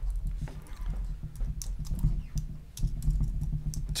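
Computer keyboard typing: irregular keystrokes as a word is deleted in a text editor, over a low steady hum.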